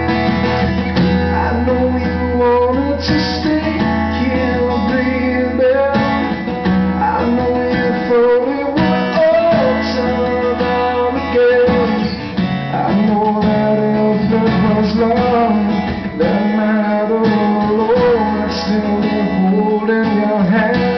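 A live band plays an instrumental passage of a pop-rock song, led by guitar over a steadily held bass line.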